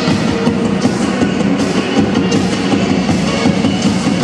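Two drummers playing drum kits together in a fast, dense groove, with rapid hits throughout, over pitched music with held notes underneath.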